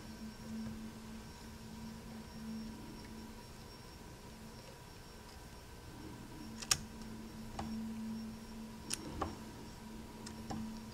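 Fine fly-tying scissors snipping excess material at the front of a fly, four sharp clicks in the second half, the first the loudest, over a low steady hum.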